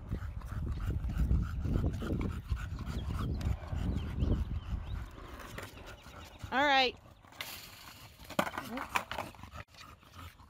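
Skateboard wheels rolling on asphalt under a bulldog, with the dog panting. A short, loud pitched call sounds about six and a half seconds in, and a few sharp clicks of the board follow near the end.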